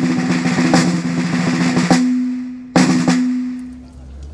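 Snare drum with a metal shell playing a fast roll for about two seconds that ends on an accented stroke. A single hard strike follows a little under a second later and rings out as it fades.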